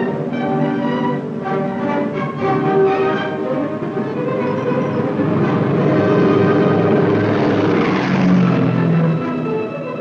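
Orchestral film score with held notes, mixed over the rushing drone of propeller bomber engines. The engine noise swells louder and brighter in the second half as the planes take off and pass.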